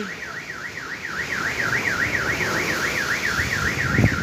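Car alarm wailing, its tone sweeping up and down about three times a second, over a steady rush of wind and breaking waves.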